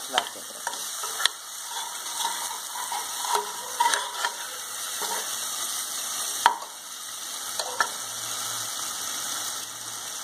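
Onion-tomato masala sizzling in oil in a pressure cooker while a steel spoon stirs it, scraping and knocking against the pot now and then; the loudest knock comes about six and a half seconds in.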